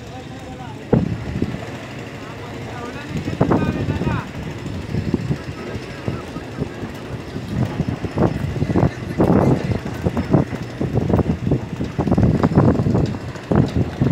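People's voices talking over a steady low background hum, with bouts of talk about three seconds in and from about halfway on.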